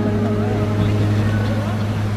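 Live band music heard from the audience in a concert hall: a held low bass note runs steadily under a sustained keyboard chord that fades out about a second and a half in.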